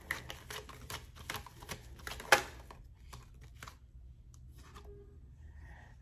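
A deck of tarot cards being shuffled in the hands: a run of quick, soft card flicks with one sharper snap about two seconds in, then it goes much quieter.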